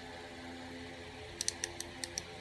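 Faint steady hum, then a quick run of light plastic clicks about a second and a half in, from fingers handling the buttons of a handheld net radio.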